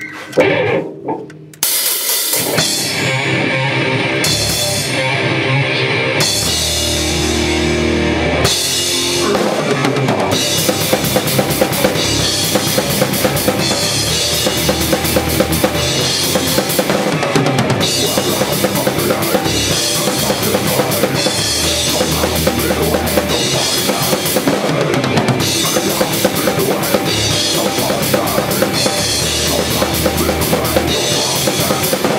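Death metal band playing at full volume: a drum kit with fast bass drum and cymbal hits under guitars and bass. After a short break the band comes in about two seconds in, and the drumming turns to a fast, even pounding about ten seconds in.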